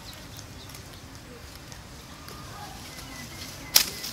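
Outdoor background with faint, indistinct vocal sounds and small scattered ticks, broken by a single sharp click near the end.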